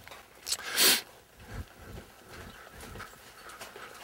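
A horse blowing out a short, loud snort through its nostrils about a second in, with a softer blow just before it.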